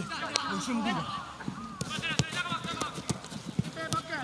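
Football players shouting and calling to each other on the pitch, including "Don't stop! Go!", with a few sharp thuds of a football being kicked, the clearest about two seconds in and just before the end.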